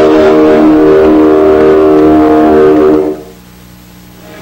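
Electric guitar chord held and ringing steadily at rock-show volume, then cut off sharply about three seconds in.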